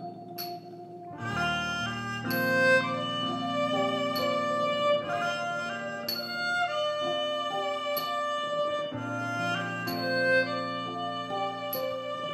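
Instrumental band passage of Thai ranat ek wooden xylophone struck with padded mallets, over acoustic guitar and electric bass, with a sustained melody line above. The bass comes in about a second in.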